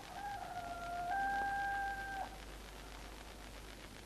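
A rooster crowing once: a stepped call that dips, then rises to a long held last note that breaks off at the end, about two seconds in all.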